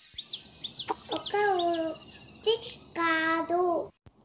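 A child's voice singing in long held notes, in three phrases, with a few short high bird chirps in the first second.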